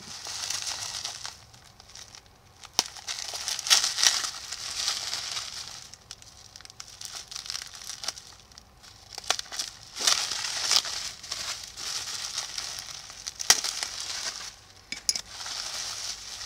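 Bubble-wrap packaging crinkling and rustling as it is handled and opened, in uneven swells with several sharp clicks scattered through it.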